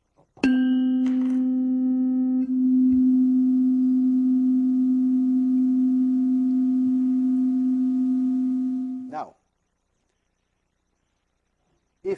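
A 256 Hz tuning fork is struck and rings with a strong steady tone; its higher overtones fade within about two seconds. It is being used to drive an identical 256 Hz fork into resonance. The ringing stops abruptly about nine seconds in.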